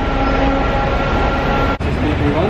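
Street traffic noise, with a vehicle engine running steadily under it as a held hum. It breaks off suddenly near the end.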